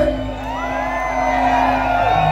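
Live band music with a held low note, under many crowd voices whooping and shouting.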